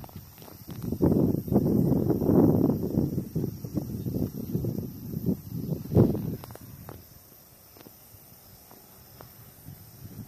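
Rustling and knocking handling noise, with footsteps on grass, as the recording phone is carried and moved about. It is loudest in the first six seconds, ends with one sharp knock about six seconds in, then drops to a faint hiss.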